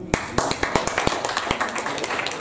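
Audience applause: many hands clapping, starting abruptly.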